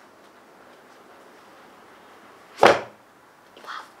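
Cardboard lid of a Google Nest Mini box being slid off: one quick loud swish about two and a half seconds in, then a softer brush of cardboard near the end.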